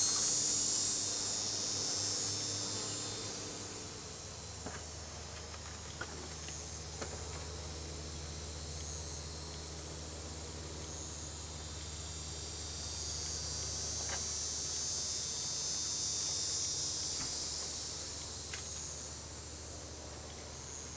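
High-pitched insect buzzing that is loud at first, fades about four seconds in, swells again in the second half and fades near the end, over a low steady hum and a few faint clicks.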